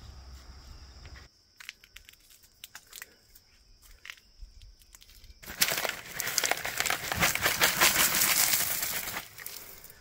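Red volcanic cinder gravel being scattered from a plastic bucket onto soil: a few separate clicks of stones at first, then, from about five and a half seconds in, a loud, dense rattle of cinder pouring and landing that stops shortly before the end.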